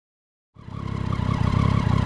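Triumph motorcycle engine idling, fading in from silence about half a second in and then running steadily with an even low pulse.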